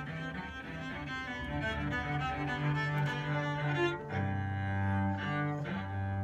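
A cello played with the bow: a melody of held notes, with stronger low notes from about four seconds in.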